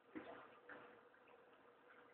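Near silence: room tone with two faint short clicks in the first second.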